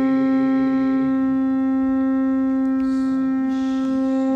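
Conch shell blown for the aarti in one long, steady held note, swelling slightly near the end.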